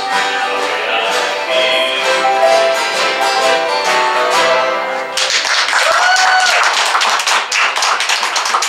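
An acoustic string band of guitars and other plucked strings plays a bluegrass-style tune, which ends about five seconds in. Audience applause follows.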